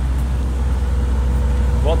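Street traffic: a steady low rumble, with a faint steady tone joining about half a second in.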